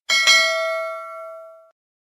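Notification-bell sound effect: a bright bell ding, struck twice in quick succession and ringing out, fading over about a second and a half.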